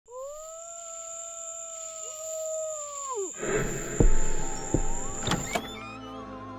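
Spooky sound-effect intro: a long howl-like call that rises slightly, holds steady for about three seconds, then falls away. It is followed by two heavy low booms and a couple of sharp cracks as music comes in.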